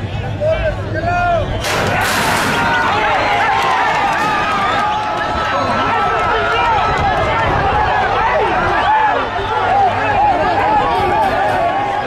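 Horse-racing starting gate banging open about two seconds in, then a crowd of spectators shouting and cheering as the horses race.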